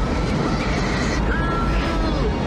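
Film sound effect of a spacecraft cabin blowing open to space: a loud, steady rushing roar of escaping air over a heavy low rumble, with faint sustained tones laid over it.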